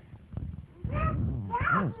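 A high-pitched voice making two drawn-out, wavering notes about half a second apart, the second bending up and down in pitch.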